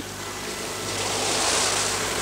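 Sea surf washing: an even rushing noise that swells to a peak about one and a half seconds in and eases slightly.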